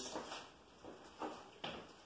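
A few faint, brief scrapes as a paintbrush is worked in paint on a palette.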